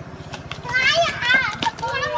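Children at play shouting with high-pitched voices, the shouts starting about half a second in and lasting about a second, over a low steady hum.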